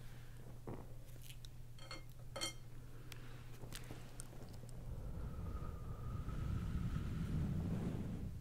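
Soft handling sounds of a smouldering white sage smudge stick waved close to the microphone: a scatter of small clicks and crackles, then a low rumble of moving air that swells toward the end.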